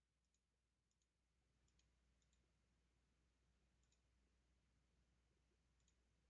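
Near silence with faint computer mouse clicks: about six short clicks at irregular intervals, as points of a line are placed one by one.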